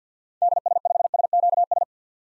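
Computer-generated Morse code at 50 words per minute: a steady tone of about 700 Hz keyed into a fast run of dits and dahs lasting about a second and a half, spelling out an amateur radio callsign.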